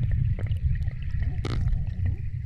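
Muffled, steady low rumble of river water with the camera at or under the surface, and a few faint knocks, one clearer about one and a half seconds in.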